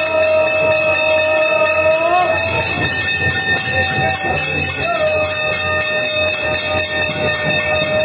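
Temple aarti bells clanging rapidly and continuously. Over them come two long held notes, one ending about two seconds in and one from about five seconds in to near the end, each bending upward in pitch at its edges.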